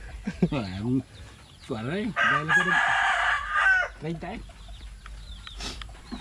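A rooster crowing once: a long call held for about a second and a half near the middle.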